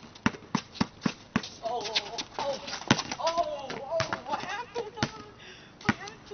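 A basketball being dribbled on a concrete driveway: sharp, regular bounces, about three or four a second at first, then fewer and more spread out.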